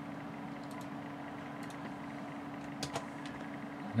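A few short clicks of a computer mouse or keyboard being worked, a pair in the middle and a slightly louder pair near the end, over a steady low hum.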